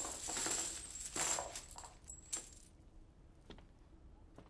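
Silver coins poured out of a wicker basket onto a cloth-covered table, clinking and jingling in a dense clatter for the first two and a half seconds or so, then a few scattered clinks as the last coins settle.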